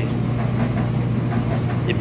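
A steady low mechanical hum, unchanging, with a faint hiss over it.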